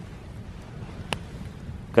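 Wood campfire burning in a stone fire ring, with one sharp pop about a second in, over a low steady rush of wind on the microphone.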